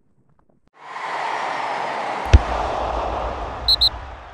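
Sound effects of an animated outro sting: a rushing swell of noise comes in under a second in, a sharp hit with a deep boom lands a little past two seconds, and two short high blips sound near the end as it begins to fade.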